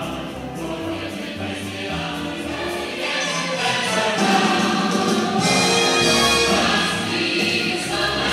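Christmas choral music, a choir singing with accompaniment, played over loudspeakers. It grows louder and fuller about three seconds in.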